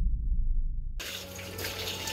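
Kitchen tap running into a sink full of dishes: a steady hiss of water that starts abruptly about a second in, after a low rumble.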